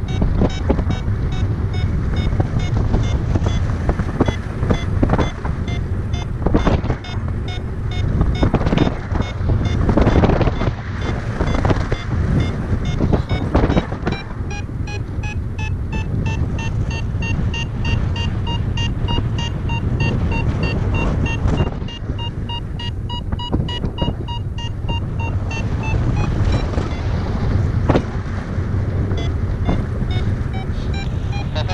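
Paragliding variometer beeping rapidly, about five short beeps a second, the audio signal of lift, over loud wind rushing across the microphone. The beeps rise slightly in pitch and then stop a few seconds before the end.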